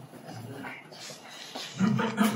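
A quiet lecture room with faint murmuring voices; near the end a man starts to laugh.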